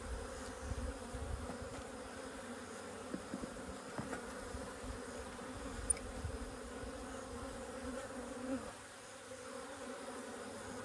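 A cluster of honey bees buzzing in a steady, even hum, with a few faint knocks.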